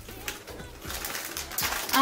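Foil potato chip bag crinkling and crackling as it is handled, the sharp crackles thickest and loudest near the end.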